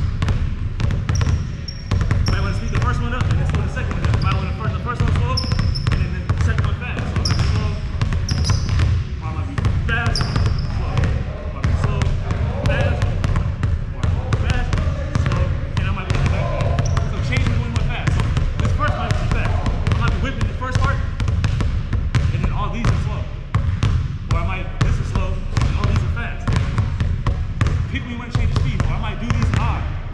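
A basketball being dribbled on a hardwood gym floor, a steady run of bounces several a second without a break.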